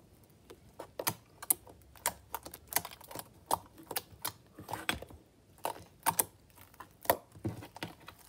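Hands kneading and poking a glittery slime, giving irregular sharp clicks and pops, several a second, as air pockets in the slime are squeezed and burst.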